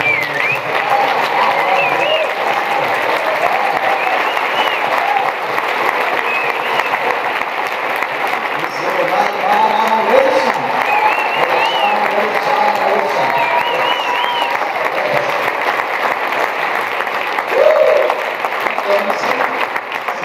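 Audience applauding steadily after a speech, with scattered voices calling out over the clapping.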